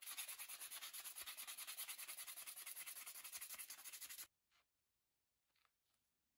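Hand sanding with P180 sandpaper on a paper cutter's handle: fast, even back-and-forth rubbing strokes that stop abruptly about four seconds in, leaving only a few faint small sounds.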